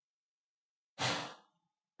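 A man's single short breath, a sigh-like exhale close to the microphone, about a second in, while he tastes a mouthful of food.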